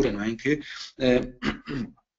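A man speaking in short, broken phrases with brief pauses between them.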